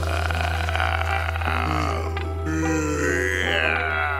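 Spooky cartoon background music over a steady low drone, with a tone that rises and falls near the end.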